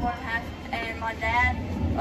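Speech only: a girl talking to a small group in a room, over a low steady hum.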